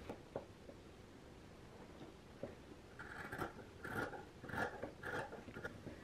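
Sewing scissors cutting through the fabric seam allowance of a stitched point, trimming it down: mostly quiet at first, then a run of about five faint snips in the second half.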